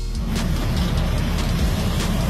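Truck-mounted leaf vacuum running, a loud, steady rush of air over a low engine hum as its wide intake hose sucks up a pile of fallen leaves.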